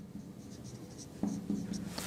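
Felt-tip marker writing on a whiteboard: faint scratching strokes as a word is written by hand.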